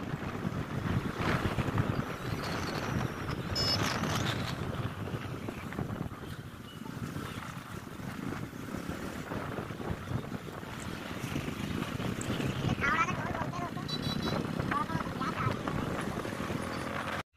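Wind buffeting the microphone on a moving motorcycle, over engine and road noise. Brief voices come through near the end.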